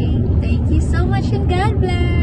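Steady low rumble of road noise inside a moving car, with voices over it.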